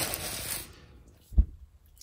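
Clear plastic bag of freshly picked spinach and chard crinkling as it is handled, fading out under a second in. A single low thump follows a little later.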